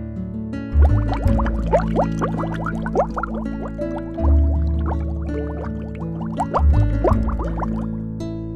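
Intro jingle music with a strong bass line, overlaid with a bubbling sound effect: runs of quick rising blips from about one to four seconds in and again from about six to seven and a half seconds in.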